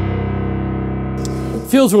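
Casio AP-270 digital piano playing its sampled grand piano voice, recorded direct from the instrument: a final chord is held and rings out, fading away about a second and a half in.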